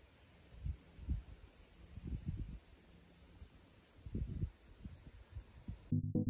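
Faint outdoor ambience: a steady high hiss with a few soft low rumbles coming and going.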